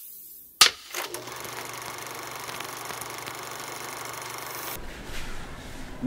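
Logo sound effect for an animated clapperboard: a short rising whoosh, then a single sharp clapperboard snap, followed by a steady mechanical hum that gives way to a low rumble near the end.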